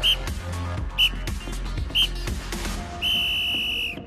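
A coach's whistle: three short blasts about a second apart, then one long blast of nearly a second. The long blast calls time on the exercise. Background music with a steady bass beat runs underneath.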